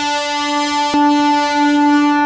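A train's air horn sounded in one long, steady note that gets louder about a second in.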